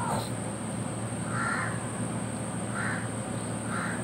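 A bird calling faintly three times in the background, short harsh calls about a second apart, over a steady low hum of room noise.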